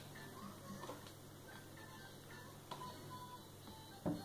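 Faint, occasional light clicks of wax crayons being picked out of a crayon pot and set down on a plastic table, over a low steady hum.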